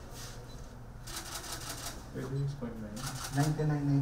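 Short bursts of crackling rustle as a blood pressure cuff is handled on the arm. A voice speaks over it from about halfway through.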